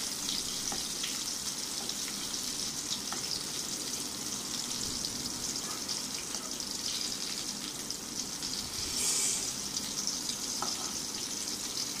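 Eggplant pieces frying in hot oil in a kadai: a steady sizzle, with a few faint clicks of a metal spatula against the pan.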